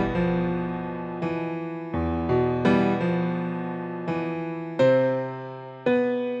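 Outro background music: slow keyboard chords, each struck and left to fade before the next.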